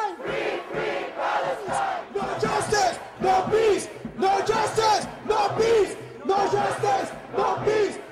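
A large crowd of demonstrators chanting a short slogan in unison, about one phrase a second.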